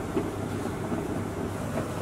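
Steady background noise with a low hum, without any clear separate sound.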